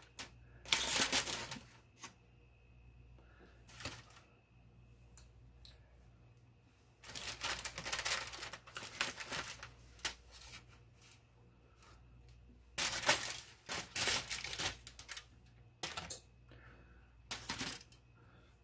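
Intermittent kitchen handling sounds: several short bursts of crinkling and scraping, with quiet gaps between, over a steady low hum.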